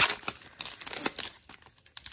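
Foil wrapper of a 2009-10 SP Authentic hockey card pack crinkling and tearing as it is picked up and opened by hand. There is a loud crinkle at the start, then smaller crackles that thin out toward the end.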